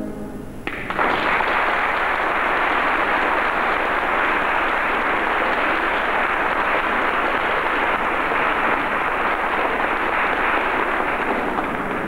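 Audience applauding, starting under a second in as the band's last held chord dies away, and carrying on steadily, easing slightly near the end.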